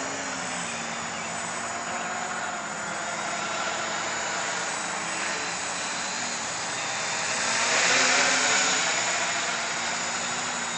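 Quadcopter on a 660 Scarab frame flying overhead: its electric motors and propellers buzz steadily with small shifts in pitch, swelling louder about eight seconds in.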